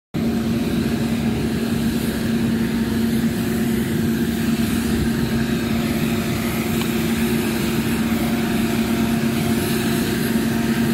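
A street sweeper running steadily, a constant drone with an unchanging hum beneath it.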